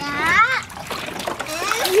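Water splashing and trickling in a children's plastic water table as toddlers pour and slosh it, with a child's high-pitched voice in the first half-second.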